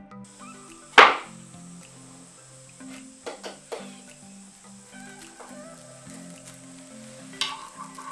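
A sharp knock about a second in, then a few lighter taps and clicks, from assembling a white flat-pack bookshelf by hand, over soft background music.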